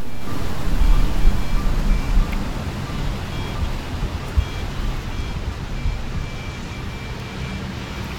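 Outdoor wind buffeting the microphone as a low rumbling noise, strongest in the first couple of seconds and then easing, with faint short high peeps repeating throughout.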